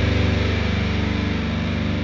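Heavily distorted, low-tuned electric guitar chord held as a steady buzzing drone with a fast flutter, beginning to fade near the end.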